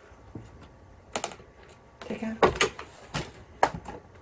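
Plastic word cards being handled and fed into a toy card-reader machine: a scatter of short, sharp plastic clicks and clacks, most of them in the second half.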